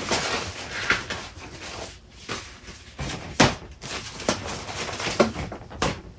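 Papers rustling and shuffling as they are leafed through by hand in a cardboard box, with several sharp slaps and knocks of paper and card spread through the rustling.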